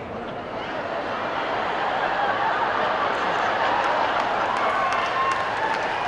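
Live audience applauding, with voices calling out in the crowd; the applause swells over the first couple of seconds and then holds steady.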